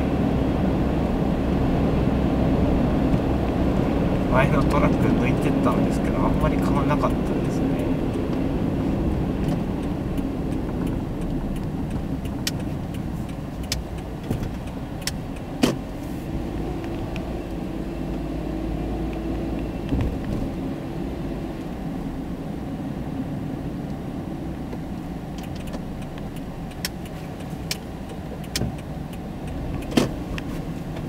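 Car engine and tyre noise heard from inside the cabin, a steady low rumble that eases off after the first several seconds as the car slows to a crawl. A scattering of light clicks and ticks sits over it.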